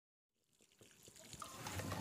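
Water from a garden hose trickling and splashing over a dug-up tree's roots as they are washed, fading in from silence and growing louder.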